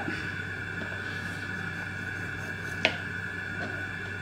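A knife blade clicking once, sharply, against a plastic cutting board about three seconds in while tomatoes are trimmed, with a few fainter knocks; a steady hum runs underneath.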